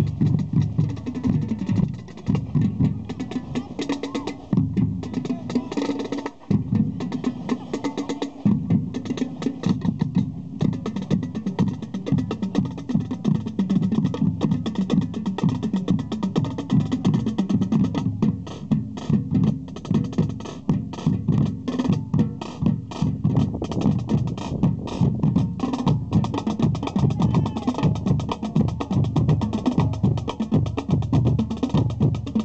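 Marching band drumline (snares, tenor drums, bass drums and cymbals) playing a marching cadence: a steady, fast stream of drum strokes.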